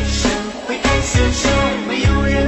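Music: a sung pop love song with instrumental backing.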